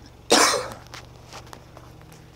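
A single short cough, loud and under half a second long, about a third of a second in, followed by a few faint clicks.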